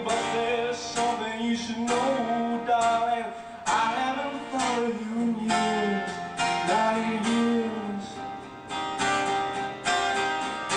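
Acoustic guitar strummed in a live duo performance, with a male voice singing held, bending notes over it until about eight seconds in.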